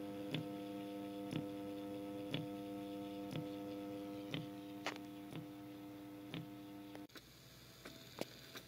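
Small stepper motor driven by an Arduino test sketch: a steady hum with a short click about once a second, which cuts off suddenly about seven seconds in. Faint ticks follow.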